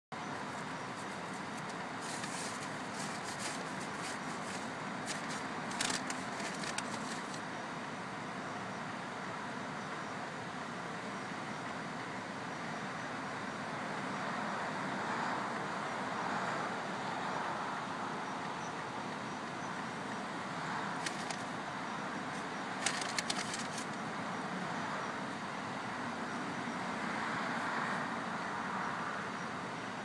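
Steady hum of a car heard from inside its cabin, the engine idling with road noise around it. A few light clicks come a few seconds in and again about two-thirds of the way through.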